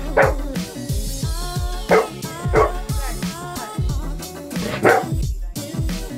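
A golden retriever barks four short times, spaced irregularly, over background music with a steady beat.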